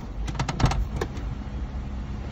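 Infiniti car's driver door being opened from inside: a quick series of clicks and knocks as the handle is pulled and the latch releases, then one more knock about a second in as the door swings open, over a low steady hum.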